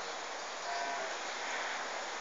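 Steady rain falling, an even hiss, with a faint short tone a little under a second in.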